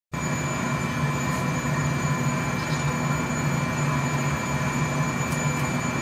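Steady roar of a glass shop's gas burners and blower fans running, with constant hum tones and a few faint clicks.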